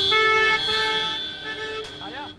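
A vehicle horn honking: held blasts with a high steady tone over them, broken by a few short gaps, stopping just after the end.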